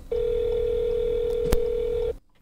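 A phone's ringback tone from a smartphone speaker: one steady ring tone about two seconds long, the sign that an outgoing call is ringing at the other end. A single sharp click comes about one and a half seconds in.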